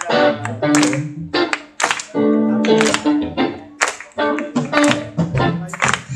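Live band playing a rock-reggae instrumental passage: electric guitar chords and bass over a drum kit, with sharp drum and cymbal hits.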